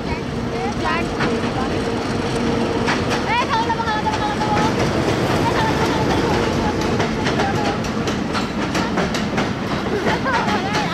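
Bangladesh Railway diesel locomotive hauling a passenger train past: a steady engine hum, with the wheels clacking over rail joints, the clacks coming thicker in the second half as the coaches roll by.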